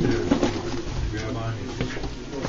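Indistinct voices of several people talking at once, over a steady low hum.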